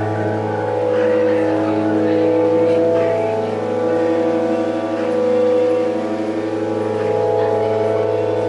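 A low, sustained drone holding several steady pitches at once, swelling and fading every second or two.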